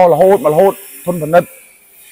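A man talking, with short pauses, over a faint steady high-pitched hiss.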